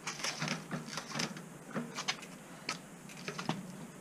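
RockShox Recon RL Solo Air suspension fork pumped by hand and let spring back, giving a string of irregular knocks and clicks as it tops out. This is typical of a blown-off top-out bumper.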